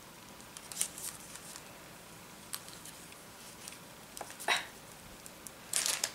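Faint scattered clicks and short scratchy rasps of a needle and embroidery floss being pushed and pulled through stiff cross-stitch canvas. The stiff fabric makes the needle hard to pass.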